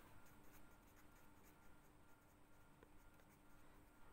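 Very faint scratching of a ballpoint pen printing capital letters on notebook paper, in short separate strokes, over a faint steady hum.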